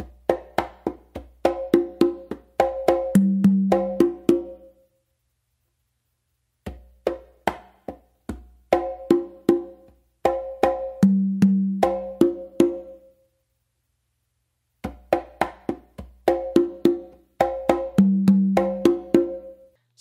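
A set of three congas played by hand in a tumbao pattern that mixes open tones, slaps, bass strokes and finger taps. The full phrase is played three times, each pass about five seconds long, with a pause of about two seconds between passes. The deepest open tones fall near the middle of each pass.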